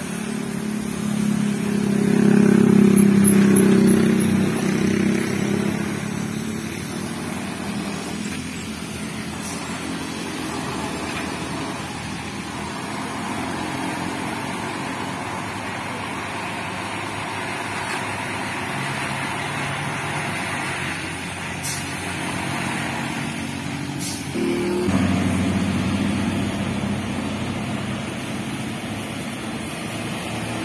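Traffic on a steep hill climb. Cars and motorcycles pass, loudest one passing close about two to five seconds in, and a heavily loaded box truck's diesel engine runs under load as the truck crawls slowly past, with a low rise in engine sound late on.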